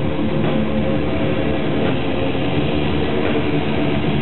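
Rock band playing live: loud distorted electric guitars over drums, a dense, steady wall of sound.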